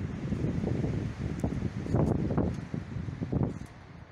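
Wind buffeting a microphone that has been covered by hand, coming in gusts and dying down near the end.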